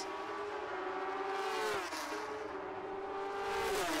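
Two drag-racing motorcycles at full throttle down the strip after the launch, a steady high engine note that dips briefly a little before halfway and falls in pitch near the end.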